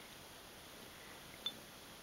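A kitten purring faintly, with one soft click about one and a half seconds in.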